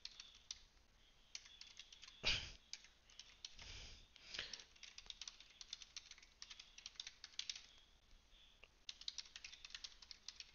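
Faint, irregular typing on a computer keyboard, keys clicking in quick runs while a link is typed or pasted into a chat. A brief louder rustle or breath comes about two seconds in.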